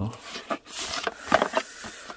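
Cardboard box being handled and turned over in the hands: a rustling scrape and a few light knocks.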